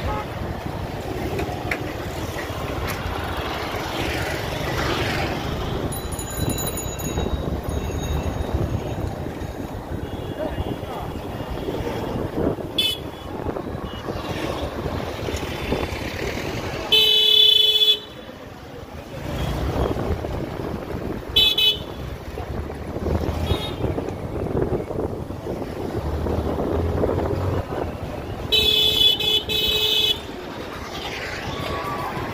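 Busy street traffic heard from a moving vehicle, with a steady rumble of engines and tyres. Vehicle horns sound over it: a loud blast about a second long partway through, a short honk a few seconds later, and another blast near the end.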